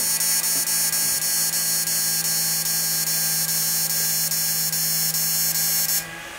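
Repaired 10-MOSFET (10 Fet V2) electronic fish-shocker inverter running under test into a lamp load. It gives a steady high-pitched electronic whine over a low hum. It is running steadily now that its broken potentiometer has been replaced.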